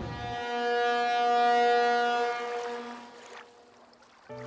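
A single steady, horn-like tone that swells and then fades away over about three seconds.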